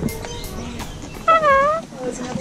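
Sulphur-crested cockatoo giving one drawn-out call a little past the middle, its pitch dipping and rising again, about half a second long.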